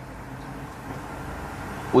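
Steady low background rumble with a faint hiss in a pause between speech, with no distinct event.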